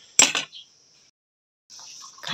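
A sharp metallic clink with two or three quicker, lighter hits just after it, from a metal utensil striking cookware. Crickets trill steadily and high underneath. All sound cuts off suddenly about a second in, and the crickets return near the end.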